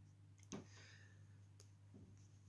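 Near silence, with a faint click about half a second in, a soft scratch of a pen writing on paper just after it, and another faint click near the end.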